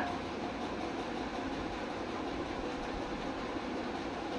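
Steady, even background noise with no distinct events, like a running fan or air conditioner.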